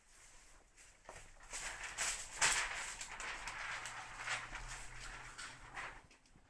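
Thin plastic window-tint film rustling and crinkling as it is handled and lifted, a rough crackly noise that swells about a second and a half in and runs on with irregular peaks.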